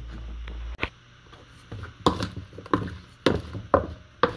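Wooden spoon tossing raw kohlrabi cubes with olive oil and salt in a plastic mixing bowl, knocking against the bowl and the cubes in a run of separate knocks, about two a second. A low hum stops under a second in.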